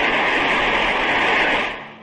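Audience applauding after a speech, heard through an old, narrow-band archival recording. The applause holds steady, then fades out near the end.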